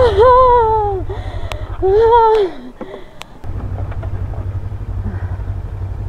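Motorcycle engine running low and steady, with a person's loud drawn-out calls over it for the first two seconds or so. The engine sound drops away briefly a little before halfway, then carries on steadily.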